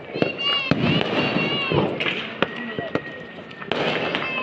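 Firecrackers popping in sharp, irregular bangs, mixed with people's voices and a thin steady high tone through the second half.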